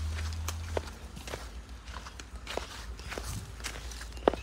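Footsteps on a dirt path at a steady walking pace, a step roughly every half-second, with a low rumble near the start that fades out within the first second.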